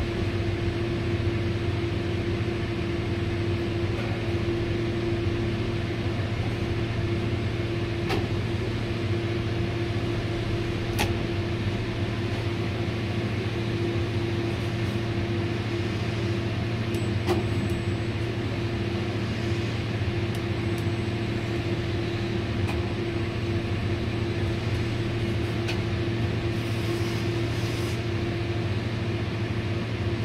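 Tower crane machinery heard from inside the operator's cab: a steady hum with a constant mid-pitched tone while the crane carries a suspended roof cassette, with a few faint clicks.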